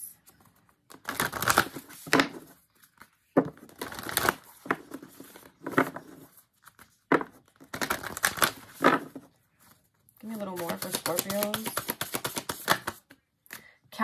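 A deck of oracle cards being shuffled by hand, in several short bursts of clattering and riffling. Near the end a woman's voice is heard for a couple of seconds without clear words.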